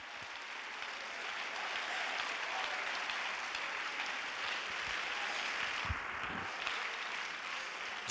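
A congregation applauding in praise, the clapping building over the first couple of seconds and then holding steady.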